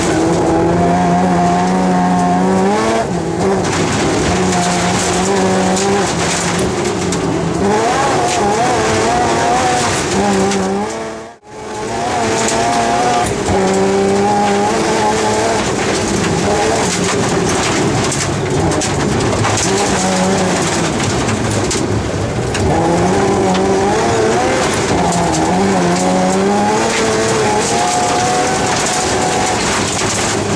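BMW M3 rally car's engine heard from inside the cabin at full stage pace, its pitch repeatedly climbing under throttle and dropping through gear changes, over the noise of the tyres on snow and gravel. About eleven seconds in the sound fades out and comes straight back.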